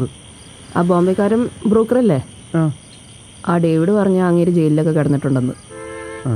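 Steady, high-pitched chirring of crickets, a continuous night insect chorus behind a conversation.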